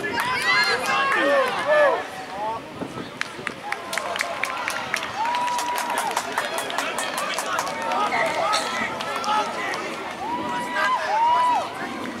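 Voices shouting across an outdoor rugby pitch: excited calls in the first two seconds, a run of sharp clicks in the middle, and long drawn-out shouts about five seconds in and again near the end.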